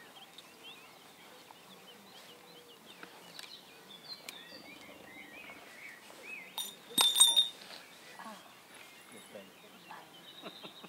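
Small birds chirping faintly throughout. About seven seconds in comes one short, sharp clink with a brief ring: a drinking cup falling from a hand and knocking against something hard.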